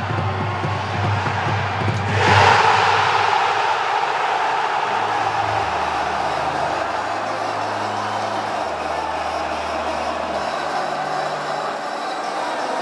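Background music with low, sustained bass notes changing every second or two, over a stadium crowd's roar that swells suddenly about two seconds in and holds: the crowd cheering a goal.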